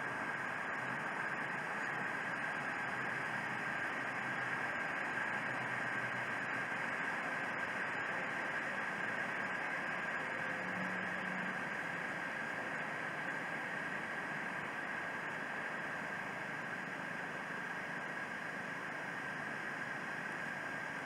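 Steady rushing of river water, an even unbroken noise with no distinct events.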